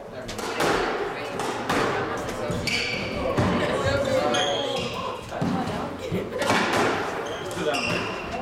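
Squash rally: a run of sharp smacks as the ball is struck by rackets and hits the court walls, with short high squeaks of shoes on the wooden floor, in a reverberant court.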